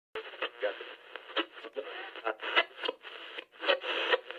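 Radio transmission with a thin, tinny voice, garbled and narrow-band as over a two-way radio link, broken by irregular crackles of static.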